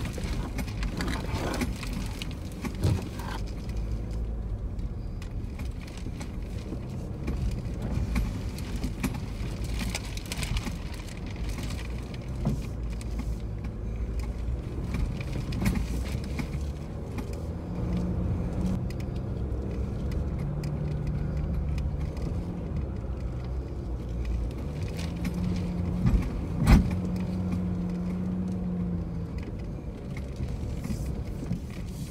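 Four-wheel drive heard from inside the cabin on a bumpy sandy bush track: steady engine and tyre rumble with loose items rattling. The engine note rises and holds higher in the second half, and a sharp knock stands out near the end.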